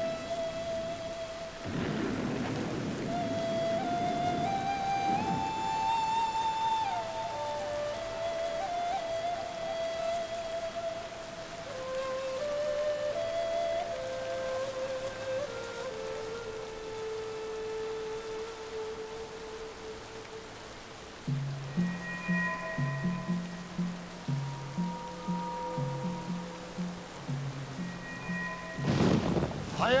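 Steady heavy rain with a slow, sustained film-score melody over it. Thunder rumbles a few seconds in, and a louder crash comes just before the end. About two-thirds of the way through, a pulsing low rhythm joins the music.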